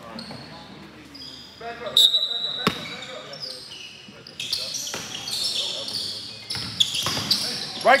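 Basketball game in a gym: a ball bouncing on the hardwood, short high squeaks of sneakers on the court floor, mostly in the second half, and background voices from players and spectators.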